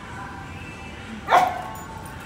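A dog barks once, a single short, sharp bark a little past halfway.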